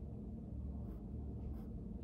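Pencil scratching on paper in two short, faint strokes about one and a half seconds apart, over a steady low room hum.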